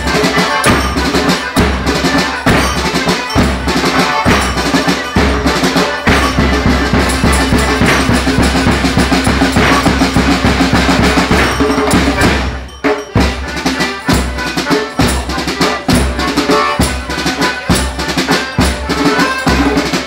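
Live folk band music driven by loud drumming with a steady beat. The drums drop out briefly about two-thirds of the way through, then pick up again.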